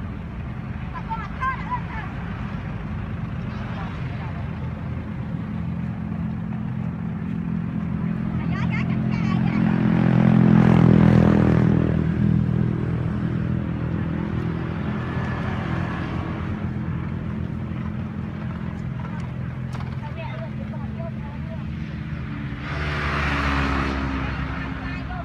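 Motor vehicle engine running with a steady low hum. It swells to its loudest about ten to eleven seconds in as the vehicle passes, then fades, and rises again near the end as another one approaches.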